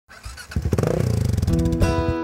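A motorcycle engine revving up briefly, then acoustic guitar music coming in with a strum in the second half.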